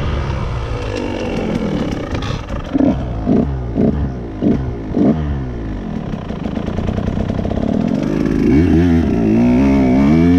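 Dirt bike engine on a trail ride. A run of about five quick throttle blips half a second apart, then the engine revs up and runs louder near the end.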